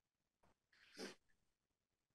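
Near silence: room tone, with one faint short breath at the microphone about a second in.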